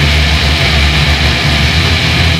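Heavy metal music: a loud, sustained wall of distorted guitar and bass holding a low drone, with no drum or cymbal hits.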